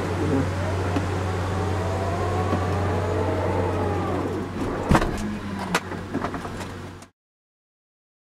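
Tesla Model X falcon-wing doors closing: electric door motors whirring with a slowly wavering whine over a steady low hum, then a sharp knock about five seconds in and a few lighter clicks as the doors latch. The sound cuts off abruptly near the end.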